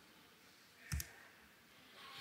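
A short double click with a dull knock, about halfway through, over faint quiet room tone.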